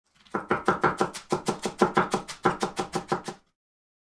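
A quick series of sharp strikes, about six a second, in three runs with short breaks between them, ending a little before the end.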